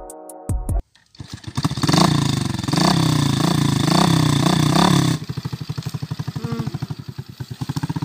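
Small motorcycle engine revved up and down several times in quick succession, then settling about five seconds in to a steady, quicker putter as the bike pulls away.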